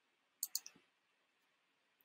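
A computer mouse button clicked, a quick cluster of two or three sharp clicks about half a second in, in otherwise near silence.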